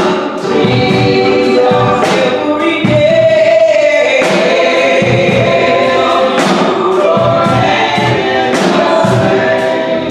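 A small group of women singing a gospel song through microphones, backed by steady instrumental accompaniment with a regular beat.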